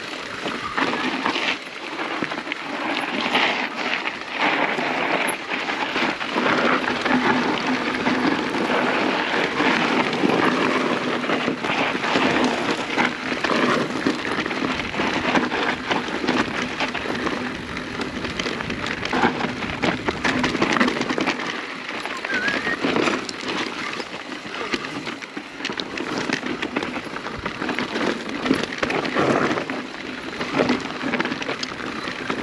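Mountain bike riding down a rough, stony trail: continuous crunching and rattling of tyres over loose rock and gravel, with the bike clattering over the bumps.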